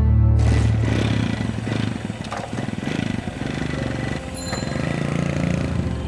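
Tense drama background music with a low, steady drone. About half a second in, a loud, noisy rushing sound cuts in over it and runs on, with a few sharp strokes and brief high tones, before thinning near the end.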